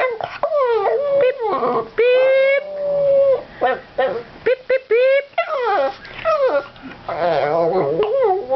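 Boston terrier howling and 'singing': a string of short calls that glide upward in pitch, with one long held note about two seconds in that lasts over a second.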